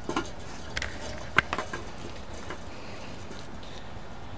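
A few light clicks and clinks of a small metal turnbuckle being handled, the sharpest about a second and a half in, followed quickly by two smaller ones.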